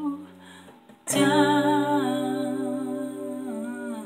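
An acoustic guitar chord is strummed about a second in and left ringing, while a woman holds a long, wavering final sung note over it, closing the song.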